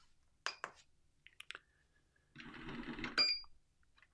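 A couple of sharp clicks, then a power screwdriver set to 5 inch-pounds runs a fastener down for about a second. The run ends with a short high tone as the torque is reached and a new peak of about 5 inch-pounds is captured.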